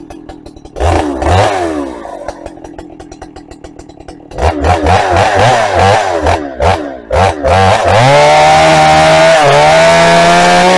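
Holzfforma 395XP two-stroke chainsaw idling, blipped once about a second in, then revved in a series of short bursts and held at high revs for the last two seconds.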